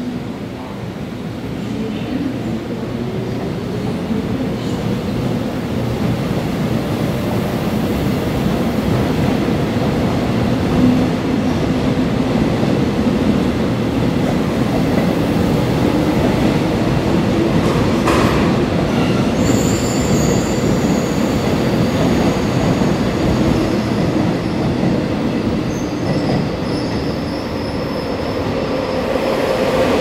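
Korail Line 1 resistor-controlled electric train pulling out and accelerating, its motor whine rising in pitch as it gathers speed, then the cars running past on the rails. A single sharp clank comes past the halfway point, followed by a high squeal.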